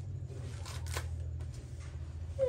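A few faint sharp clicks and scrapes of a knife peeling and cutting fruit, over a steady low hum.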